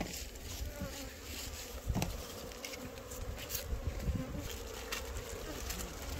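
Wild honeybees buzzing steadily around their opened nest in a tree hollow, with a few faint knocks from handling.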